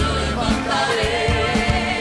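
Live gospel worship song: a man sings into a microphone over a full band with drums and bass, and other voices sing along.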